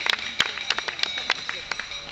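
Footsteps of runners passing close by, their shoes slapping on asphalt in a quick, irregular patter of sharp taps.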